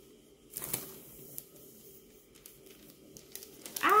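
Rustling and crinkling of a translucent inner sleeve being handled as a vinyl record is slid out of it, with the loudest rustles about half a second to a second in and fainter ones after.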